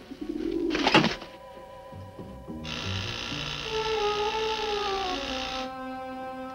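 Horror-film soundtrack music: a swell that rises to a sudden loud stab about a second in, then a dense held chord with slowly wavering tones.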